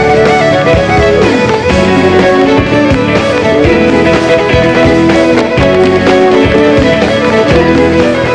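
Live Celtic fiddle tune: an electric fiddle leads a quick melody over acoustic guitar and drums, with a steady driving beat.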